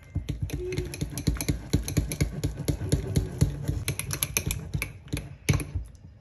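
Small wire hand whisk clicking against a glass bowl while beating powdered sugar into thick cream cheese icing: rapid, irregular clicks, several a second, stopping near the end.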